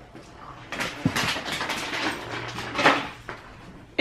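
Objects being handled and moved about on a kitchen counter: irregular rustling and light knocks, with one sharper clack near the end.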